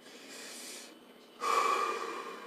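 A man breathing deeply through his nose and mouth: a soft breath early, then a louder, stronger breath starting about one and a half seconds in.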